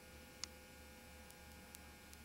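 Near silence: a steady electrical mains hum on the recording, with one short faint click about half a second in.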